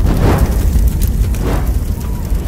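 Explosion sound effect: a loud, deep rumble that swells twice.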